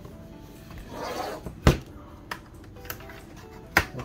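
Plastic laptop case handled and its bottom cover pried at with a plastic spudger: two sharp clicks, one a little under halfway through and one near the end, with a brief rustle before the first. Faint music plays underneath.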